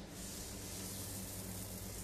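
Steady low hum with an even hiss from background machinery or ventilation.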